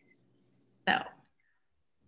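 One short spoken word, "so", about a second in; otherwise only faint room hum over the call audio.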